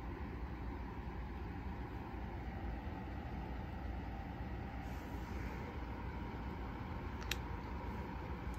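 Steady low background rumble of room noise, with one faint click about seven seconds in.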